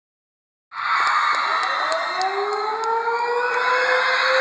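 Concert crowd screaming and cheering, with a slowly rising tone underneath, the sound cutting in abruptly just under a second in.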